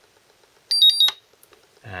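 Hobby LiPro balance charger's built-in beeper giving a quick run of short, high-pitched beeps at two alternating pitches, sounded as Start is pressed and the charger begins its battery check before charging a lithium-ion pack.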